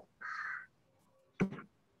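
A single short crow caw, followed about a second later by a brief click.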